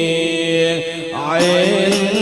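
Chanting voices holding long notes that slide from one pitch to the next, with a pitch change about a second in.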